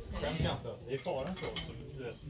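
Dishes and cutlery clinking, with people talking over it.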